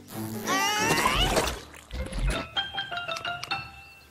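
Cartoon sound effects and music: a rising squeal as a glue bottle is squeezed hard, a low splat of glue bursting out about two seconds in, then a short run of plinking musical notes.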